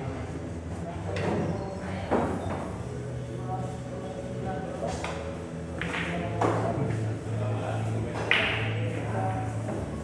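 Pool balls clacking several times as shots are played, the sharpest about two seconds in and again near the end, over background music and chatter in the billiard hall.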